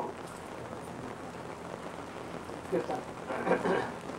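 A steady hiss fills a pause in a man's talk. His voice comes back briefly for about a second, around three seconds in.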